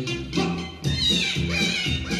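Hindi film song played from an LP vinyl record on a Philips 242 turntable through home loudspeakers: a steady bass and mid-range accompaniment, with a high, wavering, gliding melody line coming in about a second in.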